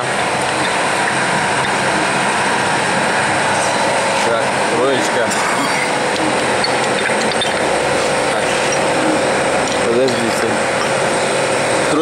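Steady factory machinery noise, an even hum with several steady tones, with faint voices briefly about four to five seconds in and again near ten seconds, and a few light clicks.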